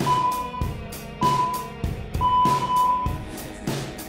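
Background music with a steady beat, over which an electronic timer sounds three beeps about a second apart, the last one longer: a countdown marking the end of an exercise interval.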